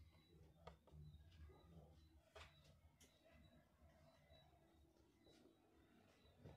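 Near silence: a faint low hum with a few soft ticks.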